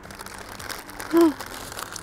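Paper burger wrapper crinkling faintly as the burger is handled and eaten. A short voiced 'mm' from the eater, with falling pitch, comes a little over a second in and is the loudest sound.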